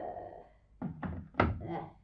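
A corded telephone handset being hung up: three short knocks and clatters of plastic on the set, the last the loudest.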